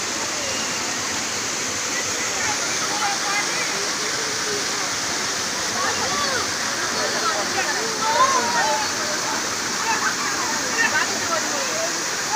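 A waterfall rushing steadily, with the voices of people talking and calling faintly over it.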